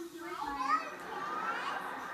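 Young children's voices vocalizing and babbling without clear words, the pitch wavering up and down.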